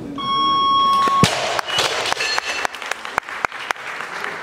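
A steady electronic beep lasting about a second, the down signal after a completed snatch. It is followed by the loud crash of a bumper-plate barbell dropped from overhead onto the lifting platform, then scattered sharp claps and knocks.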